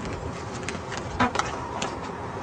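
A person breathing out hard while blowing more air into an already firm rubber balloon, with a few short clicks from handling it, the loudest about a second in.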